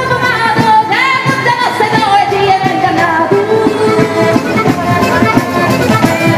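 Live pizzica folk dance music: singing over strummed guitars and a frame drum keeping a fast, even dance beat.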